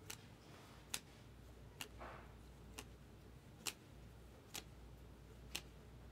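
Sharp light clicks about once a second, slightly uneven, from trading cards being snapped one behind another as a stack is gone through by hand, with a brief soft slide about two seconds in.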